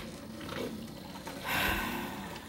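Keurig coffee maker brewing quietly, with a short breathy hiss about one and a half seconds in.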